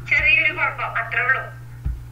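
A person speaking through the video call's audio, over a steady low hum, with a short thump near the end.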